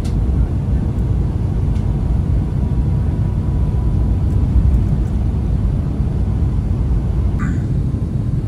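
Steady low rumble of an Airbus A350 airliner cabin on final approach with the landing gear lowered: engine and airflow noise heard from inside the cabin, with a faint steady whine.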